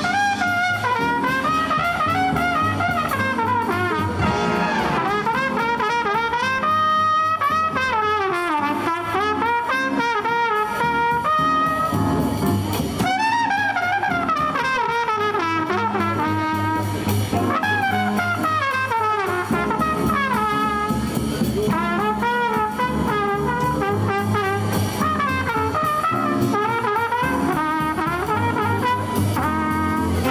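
A student jazz big band playing live, with a trumpet playing a solo line at the front over the saxophone section, the rest of the brass and a rhythm section of double bass and acoustic guitar.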